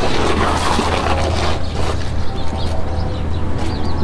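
Rustling, scuffing handling noise as the camera is carried and moved, over a steady low hum.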